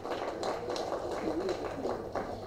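Faint room noise in a microphone pause, with a few soft ticks and a brief faint voice.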